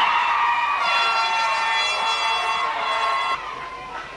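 Crowd cheering, then a horn sounds one steady blast from about a second in that cuts off sharply a little over two seconds later.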